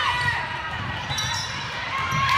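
Sneakers squeaking on a hardwood gym floor and players calling out during a volleyball rally, with short high squeals that hook up and down in pitch.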